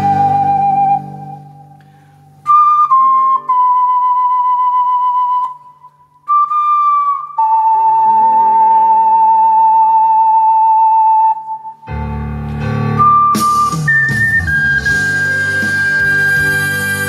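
Ocarina playing a slow melody of long held notes with vibrato. The accompaniment drops out a second in, leaving the ocarina almost alone, and comes back fuller about twelve seconds in as the melody climbs higher.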